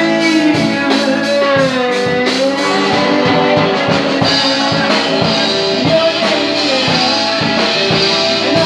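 Live rock band playing: electric guitars, bass guitar and a drum kit keeping a steady beat.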